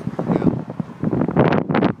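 Gusty wind from an approaching thunderstorm buffeting the microphone, in irregular loud blasts from about a second in.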